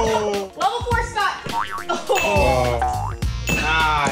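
Edited-in cartoon sound effects, sweeping up and down in pitch, over upbeat background music, with excited voices in between.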